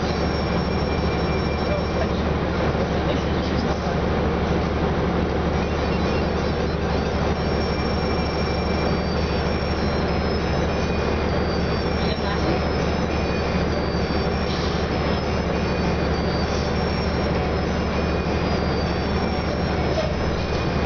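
Orion VII NG diesel transit bus idling while standing still, heard from inside the passenger cabin: a steady low engine hum.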